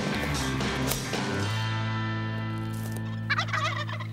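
Wild turkey gobbling: a rattling call at the start and a shorter one near the end, over a steady low tone.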